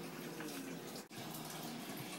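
A steady, low hiss of noise with a brief dropout about a second in.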